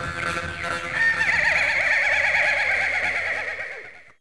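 A woman singing a long held high note into a microphone with a fast, wide wavering, over instrumental accompaniment; the note comes in about a second in and fades out near the end.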